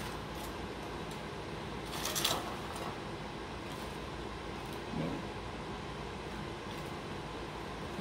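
Metal serving tongs handling crispy fried pig-ear pieces between a glass bowl and a platter: a short clatter about two seconds in and a few faint clicks over a steady room hum.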